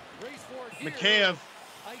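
A man's voice speaking, with one loud, drawn-out word about a second in.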